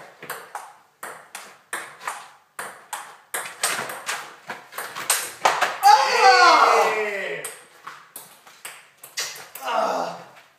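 Table tennis rally: the ball clicks off paddles and table in a quick, fairly even run of sharp ticks. About halfway through, a long shout falling in pitch rises over the play, and another voice comes near the end.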